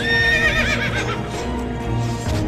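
A horse whinnies once in the first second: a high call that holds steady and then breaks into a quavering tremble. Background music plays under it.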